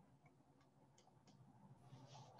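Near silence: faint room tone with a few soft, faint clicks.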